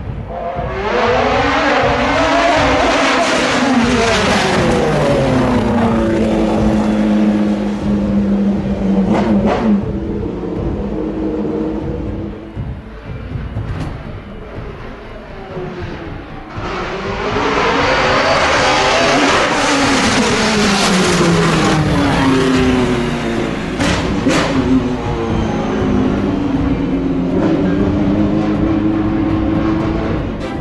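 Two sport-prototype race cars pass in turn at full throttle. Each engine rises in pitch as it approaches and falls away as it goes by, with steps where the gears change.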